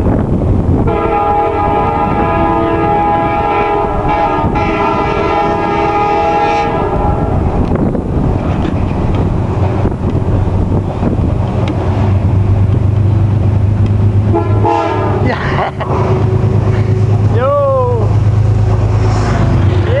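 Amtrak Adirondack passenger train's locomotive horn sounds a long chord-like blast of about six seconds, then a short blast a little later. The train's low rumble builds in the second half as it comes up and runs past the platform.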